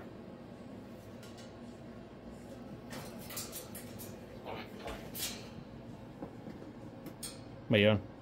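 Light knocks and rattles from a cockatoo clambering on the wooden perches of its wire cage. Near the end comes one short, loud voice sound.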